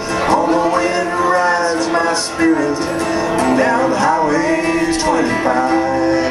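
Live acoustic music: an acoustic guitar accompanying a wordless lead melody that slides and wavers between notes.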